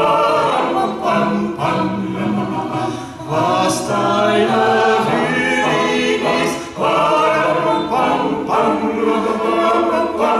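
Mixed choir singing a cappella, with a male and a female soloist in front, in several phrases with brief breaks between them.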